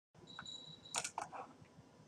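Faint computer mouse clicks, a few within about half a second, selecting an on-screen menu item. Before them a faint high steady whine stops about a second in.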